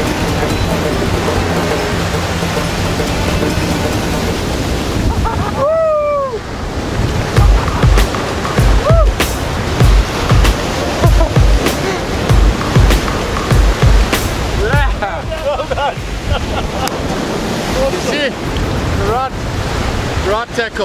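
Surf breaking and washing up a beach with wind, under background music that picks up a steady low beat after about seven seconds. A few voices call out about six seconds in and again near the end.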